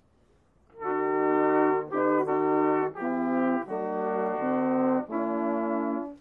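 Brass ensemble music, slow held chords in a chorale style, starting about a second in after a short silence.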